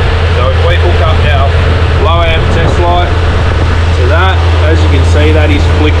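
A man talking over a loud, steady low mechanical hum that runs without a break.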